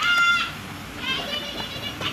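A group of children shouting and calling out. It is loudest in the first half-second, then quieter with scattered voices.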